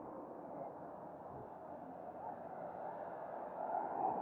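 Muffled outdoor street ambience: a steady low hum of traffic and surroundings, growing a little louder near the end.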